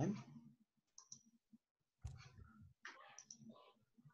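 A few faint, scattered computer mouse clicks.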